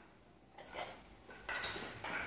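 Quiet kitchen handling noises: a few faint light knocks about half a second in, then a brief, louder rustling clatter near the end.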